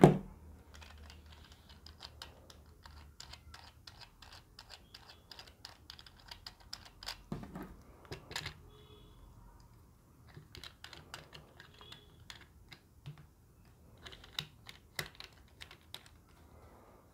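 Faint, irregular plastic clicking and tapping as a smartphone is fitted into the plastic phone clamp of a flexible-leg gorilla tripod. The clicks bunch up about seven to eight seconds in and again near the end.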